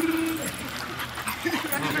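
A dog vocalizing briefly, with people's voices around it and a woman laughing near the end.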